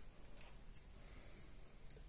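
Near silence: room tone with a faint low hum, and a single faint click near the end.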